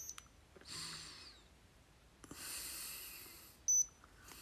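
Two soft breaths through the nose while a digital thermometer is held in the mouth. Near the end comes a short, high electronic beep, the thermometer signalling that its reading is done.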